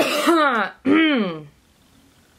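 A woman coughing and clearing her throat: two loud voiced coughs, each about half a second long and falling in pitch.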